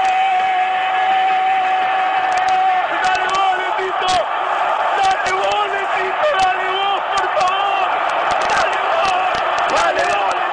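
A football commentator's long, held goal shout over a stadium crowd celebrating a goal; the shout ends about three seconds in. Excited shouting voices and crowd noise go on after it.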